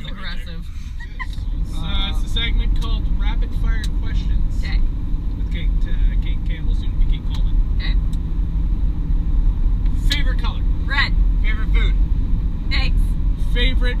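Steady low rumble of a pickup truck's engine and tyres heard from inside the cab while driving, growing louder about two seconds in, with voices breaking in now and then.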